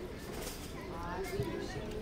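Quiet, indistinct talk, with a few light clicks and rustles of thin plastic as a plastic spoon scoops into a cake in a clear plastic takeaway box.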